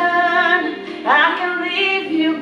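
Woman singing a slow ballad into a handheld microphone over a backing track with background vocals: she holds one note, then starts a new phrase about a second in.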